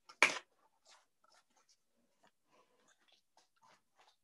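Greeting-card pages being handled and turned: one brief, loud papery noise just after the start, then faint scattered rustles and light ticks.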